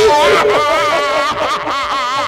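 A performer's voice in a long, rapidly wavering wail, heard over a steady held musical note.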